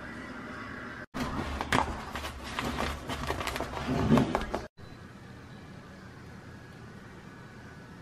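Brown paper mailer being handled and opened by hand, crinkling and crackling in a dense run of sharp rustles. It starts about a second in, lasts about three and a half seconds and cuts off abruptly.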